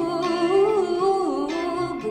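Music: a woman's voice singing a slow, wordless, wavering melody that glides up and down, leading into a song.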